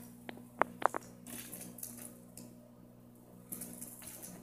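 Four short, light clicks in the first second, then quiet room tone with a faint steady hum.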